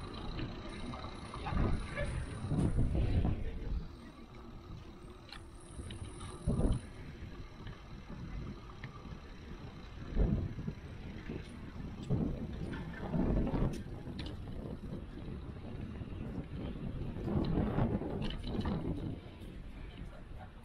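Bicycle rolling over brick paving, picked up by a bike-mounted action camera: a steady rolling rumble and rattle, with irregular low surges of wind buffeting the microphone.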